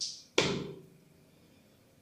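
A single sharp knock of something hard, ringing briefly in a small tiled room, preceded by a short hiss.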